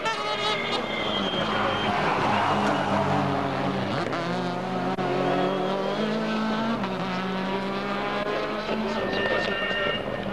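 Rally car driven hard on tarmac: the engine note climbs and drops in steps through gear changes and lifts off for corners.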